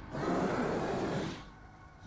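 A gorilla-like monster's harsh, breathy growl from an animated trailer's soundtrack. It lasts about a second and a half, then fades.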